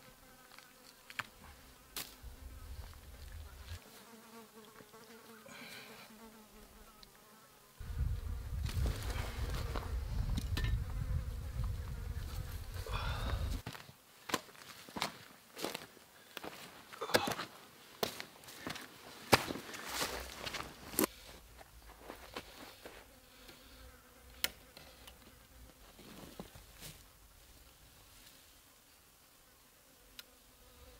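Flies buzzing around a freshly killed goat carcass. In the middle a loud low rushing noise lasts about six seconds and cuts off, followed by a run of sharp snaps and cracks over several seconds.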